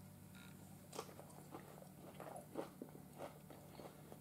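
A person chewing a mouthful of cooked green beans: faint, scattered soft clicks of chewing over a low steady hum.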